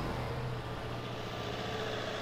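A four-wheel drive's engine running steadily at low speed, a low, even hum.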